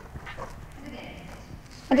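A horse's hooves striking the sand footing of an arena as it trots, a soft uneven beat of muffled thuds.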